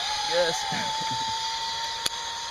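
Zip-line trolley pulleys whirring along the steel cable: a steady whine rising slightly in pitch, over a hiss.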